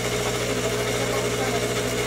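Terrarium humidifiers running: a steady mechanical hum with a few fixed low tones over an even hiss.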